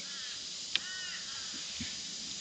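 A crow gives one short caw about a second in, just after a sharp click, over steady outdoor background hiss.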